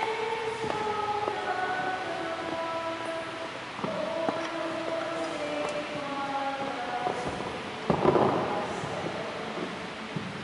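Slow communion hymn sung by a choir in long held notes that step from pitch to pitch, with a brief noisy burst about eight seconds in.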